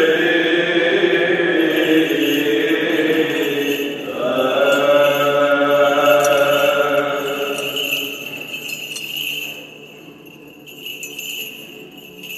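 Byzantine chant sung in long held phrases, with the light jingling of a brass censer's little bells and chains as the priest swings it. A new chanted phrase begins about four seconds in, and the singing fades away after about eight seconds, leaving mostly the jingling.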